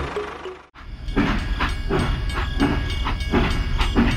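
Background music fades out in the first second, then a toy train starts running on its track with a steady rhythmic train chugging, about three beats a second.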